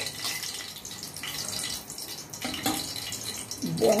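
Hot cooking oil in a kadhai sizzling and crackling steadily around frying green chillies and curry leaves. The gas is off and the oil is frying on its own stored heat.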